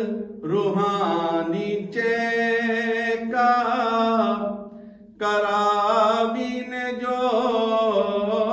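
A man singing a Gujarati manqabat unaccompanied, in long held notes with ornamented turns of pitch. He breaks off for a short breath about five seconds in.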